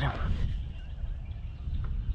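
A steady low rumble with no clear single event.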